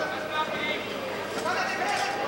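Indistinct voices of spectators and officials in a sports hall: overlapping chatter and men's speech, with no words clear.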